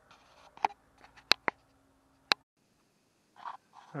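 A few sharp clicks and taps, four or five in the first two seconds or so, over a faint steady hum: small objects or the camera being handled.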